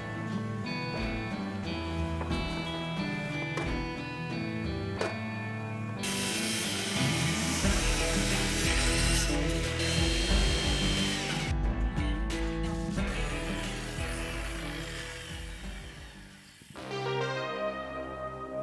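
Background music, with a circular saw cutting along the overhanging ends of pine deck boards for about ten seconds, starting about six seconds in, to trim the overhang flush. The sound fades away before the music carries on alone near the end.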